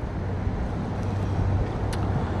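Road traffic going by on a busy city street: a steady low rumble.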